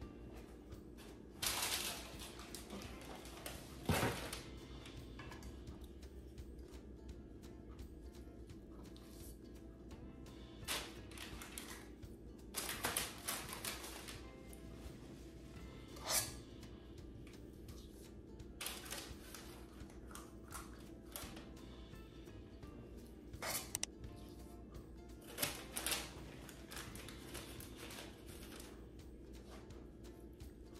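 Metal cookie scoop scraping and clicking against a stainless steel mixing bowl as dough is scooped out, in short scattered strokes, the sharpest about four seconds in. Soft background music plays underneath.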